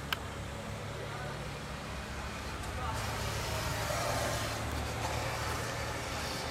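Indistinct voices over a steady low rumble, swelling louder about halfway through, with a sharp click just at the start.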